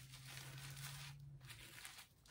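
Faint rustle of an artificial Christmas tree's branch tips being bent and shaped by a gloved hand, over a low steady hum that stops about a second and a half in.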